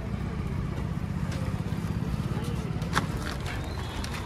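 Auto-rickshaw's small engine idling with a steady low pulsing, and a sharp click about three seconds in.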